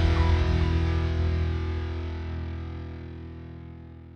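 Final distorted electric-guitar chord of a metalcore song ringing out, its sustained notes fading steadily away.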